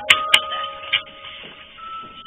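Sustained chime-like electronic tones, held steady and then shifting to a higher note near the end, with two sharp clicks just after the start and a softer knock about a second in.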